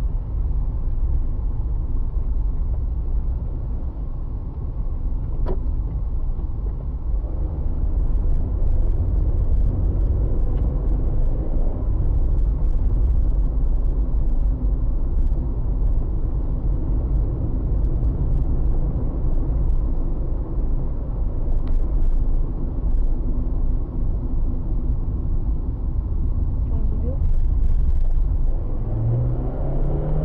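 Steady low rumble of a car's engine and tyres while driving along a road, heard from inside the cabin.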